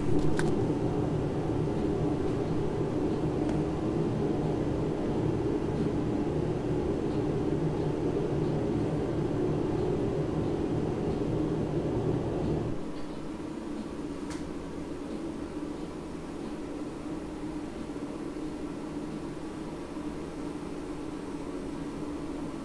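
Steady machine hum with a deep low part that cuts off suddenly about thirteen seconds in, leaving a fainter steady hum.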